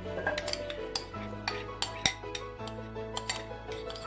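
A metal spoon scraping and clinking against a glass bowl as thick milk cream is scooped out into a steel pot: a run of short, irregular clicks. Background music with held notes plays underneath.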